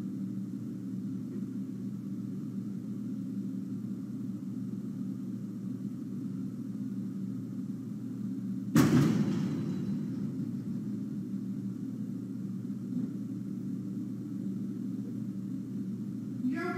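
A single sudden boom about nine seconds in, dying away over a couple of seconds, heard inside a house over a steady low hum. It is a boom of unknown origin; eyewitness reports of a vapor trail point to a meteor or an aircraft as a possible cause.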